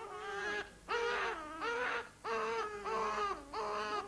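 A high-pitched, baby-like voice wailing in four drawn-out, wavering cries, with short gaps between them.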